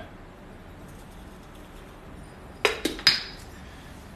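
Three sharp clinks close together, about two and a half seconds in, as a drinking cup is knocked against hard surfaces while being handled. The last clink rings briefly.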